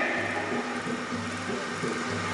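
Qawwali accompaniment in a quiet stretch: harmonium holding low notes, with a soft low beat about twice a second.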